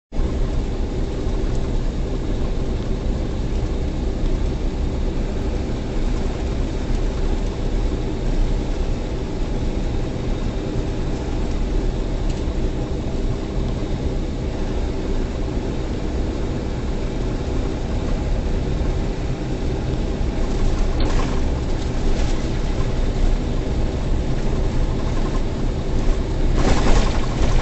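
Semi-truck's diesel engine running steadily, with tyre and road noise on a snow-covered highway, heard from inside the cab while driving. A few light clicks come about three-quarters of the way through.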